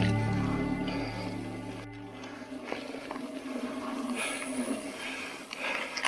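Background music fades out over the first two seconds. Then comes faint rolling noise from a mountain bike on a sandy dirt trail, with a few light clicks.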